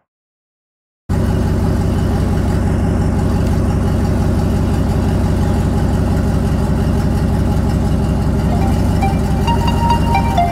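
Pickup truck engine idling steadily with a fast, even pulse in its low exhaust note. It cuts in about a second in, after a moment of silence.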